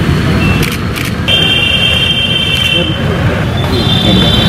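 Road traffic noise with a steady high-pitched tone, held for about two seconds from just over a second in.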